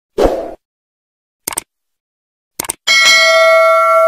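Subscribe-button animation sound effects: a short whoosh at the start, a click about a second and a half in, and a quick double click a second later. Then a notification-bell ding rings out in several clear tones and carries through to the end.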